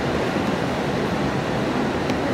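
Steady, even rushing noise with no distinct events in it.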